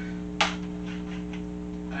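A single sharp clack of a plastic DVD/Blu-ray case being handled, about half a second in, over a steady electrical hum.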